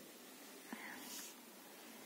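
Near silence: faint room hiss, with a light click and a short soft rustle about a second in, typical of a lab-manual notebook being handled.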